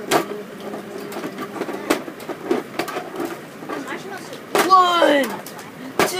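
A boy's voice making one loud exclamation that falls in pitch about five seconds in, with a couple of light knocks earlier as plastic action figures are handled on a toy wrestling ring.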